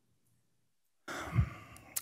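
About a second of dead silence, then a breathy sigh or exhalation close to a desk microphone, with a brief low puff of breath hitting the mic, fading just before speech.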